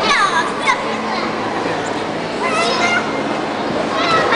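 Young children's high voices calling and chattering as they play, with a falling squeal near the start and another burst of calls about two and a half seconds in, over a steady hubbub of voices.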